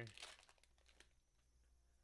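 Faint crinkling of a foil Pokémon booster pack wrapper being torn open, dying away within the first second. Near silence after that.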